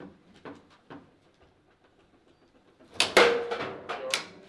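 Foosball ball and rods knocking on a table football table during play: a few faint taps early on, then from about three seconds in a quick run of loud, hard knocks with a short ringing tail.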